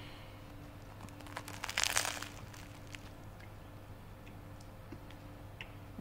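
Crusty Vietnamese bread roll crackling as it is bitten into: a short burst of crunching about two seconds in, then a few faint crunches of chewing.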